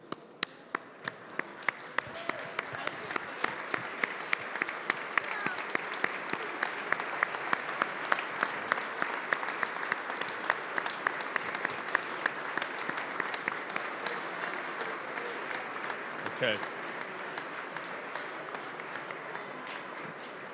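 A large audience applauding, building up over the first couple of seconds and thinning out near the end. One set of hand claps close to the microphone stands out sharply above the crowd, about two or three claps a second.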